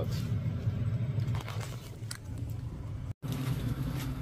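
80% gas furnace running in heating mode: a steady low hum with a few faint clicks. The sound cuts out for a moment about three seconds in, then the hum returns.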